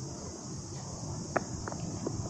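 A steady, high-pitched chorus of insects calling in the trees, over a low rumble, with two sharp clicks a little past the middle.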